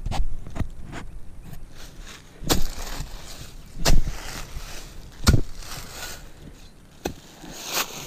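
Digging shovel blade chopping into leaf-covered ground and a tree root: several sharp strikes, the loudest four about a second and a half apart, with dry leaves rustling between them.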